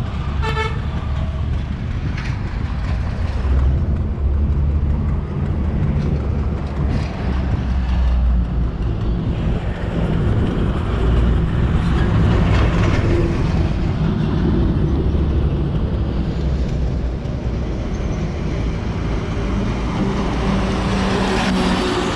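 Road traffic on a highway bridge: vehicles and trucks passing with a steady low rumble, and a vehicle horn tooting briefly about half a second in.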